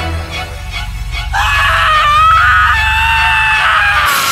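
A low, pulsing horror-music drone, then from just over a second in a loud, long, high-pitched scream that holds to the end.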